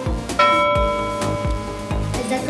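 Background music with a steady beat, about three thumps a second, and a bell-like chime note that starts about half a second in and rings on over the beat.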